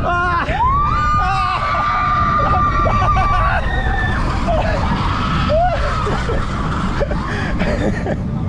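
Roller-coaster riders on the Seven Dwarfs Mine Train screaming and whooping, with one long held scream starting about a second in, over the low rumble of the moving train and wind buffeting the microphone.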